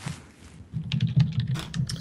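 Typing on a computer keyboard: a fast, irregular run of keystrokes that starts a little under a second in.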